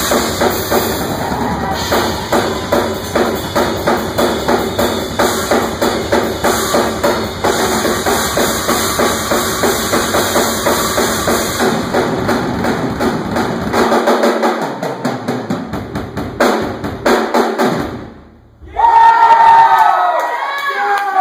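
Live instrumental rock from a band: a drum kit played with fast, driving strokes over electric bass and amplified instruments. Near the end the music cuts off, and after a brief pause a loud voice comes in.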